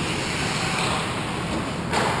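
Steady ice rink noise during play, with skate blades scraping across the ice, then a short sharp click near the end.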